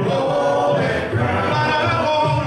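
Male gospel quartet singing a cappella into microphones: four voices in close harmony holding sustained chords, with no instruments.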